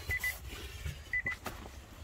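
Nissan Leaf's interior warning chime sounding over and over: short high beeps in quick triplets, about one group a second. A few sharp clicks fall among them.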